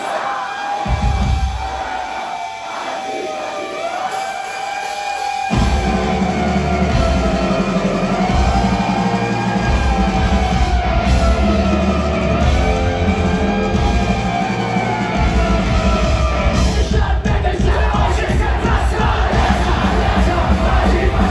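Live punk rock band playing loudly in a concert hall, recorded from within the crowd: a sparse opening with a wavering melody line, then the full band with drums and electric guitars comes in about five seconds in.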